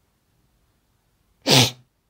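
A person sneezing once, a single short, loud burst about one and a half seconds in after near silence.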